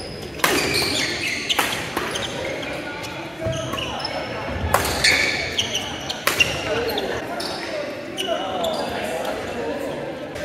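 Badminton doubles rally on a hardwood gym court: sharp racket strikes on the shuttlecock at irregular intervals, with sneakers squeaking on the floor, echoing in a large hall with voices in the background.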